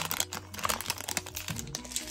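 Foil wrapper of a Pokémon trading-card booster pack crinkling in the hands as the cards are slid out of the torn pack, in a dense run of irregular crackles.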